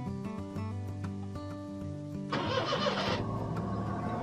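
Background music plays throughout. About two seconds in, the van's engine is cranked for about a second on a cold morning and a steady running sound continues after it.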